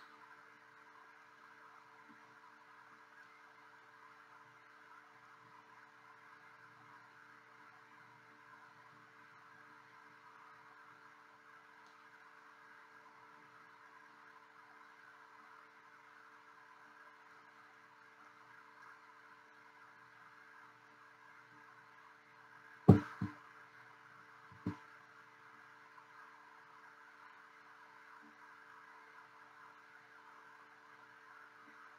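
Faint steady room hum for most of the time. About three quarters of the way through, a sharp knock followed at once by a smaller one, and a third knock about a second and a half later, as the painted canvas is set down on the tray.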